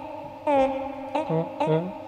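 Chopped vocal samples playing back: short cut-up clips of a man's voice, processed and held on steady pitches, retriggered several times in quick succession.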